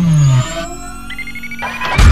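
Synthesized logo-intro music and sound effects: a falling sweep that ends about half a second in, then rising electronic tones that build to a loud hit at the end.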